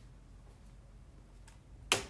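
A small hard object handled on a desk: one sharp click near the end, with a fainter click about half a second before it, over a low steady hum.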